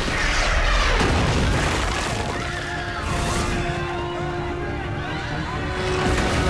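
Dramatic score music over a deep rumble and booms, with a falling whoosh in the first second or so and panicked shouts from a fleeing crowd.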